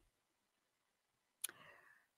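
Near silence, broken by one faint click about one and a half seconds in.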